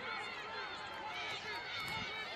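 Many voices shouting at once from the sideline and field, overlapping so that no single speaker stands out.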